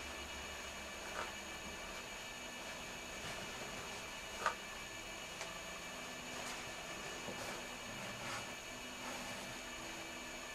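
Quiet room with a steady background hiss and a few faint rustles and taps of paper towel being handled while wiping off a snake, the loudest a single sharp tap about four and a half seconds in.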